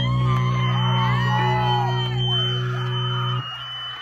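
Amplified electric guitar holding a final ringing chord with a high steady tone over it, while the crowd whoops and yells; the chord cuts off suddenly about three and a half seconds in, leaving the crowd noise.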